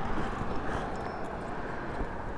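Steady outdoor background noise with a few faint knocks and scuffs as the rider moves around the stopped motorcycle; its engine has been switched off and is not running.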